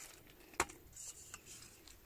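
Quiet handling sounds while tomatoes are being picked: one sharp click about half a second in, then a few fainter clicks and light rustling of the tomato plant's leaves.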